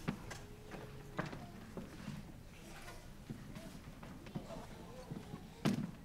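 Scattered knocks and clicks of equipment being handled and set up on a stage, under faint low voices, with one louder thump near the end.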